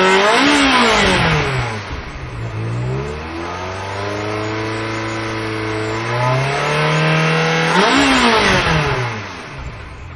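Ferrari V8 engine being revved. A rev peaks about half a second in and falls away, the revs are then held steady and raised a step, and a sharp blip near the end drops back down.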